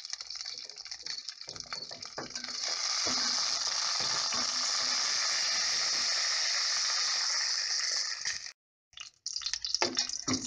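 Dried chiles de árbol and a garlic clove frying in a little oil in an enamel pot: a steady sizzling hiss that grows louder about two and a half seconds in, with a few clinks of a stirring spoon in the first couple of seconds. The sound cuts out briefly near the end.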